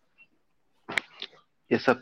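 A pause in a man's speech, broken by one sharp click about halfway through. His voice comes back near the end.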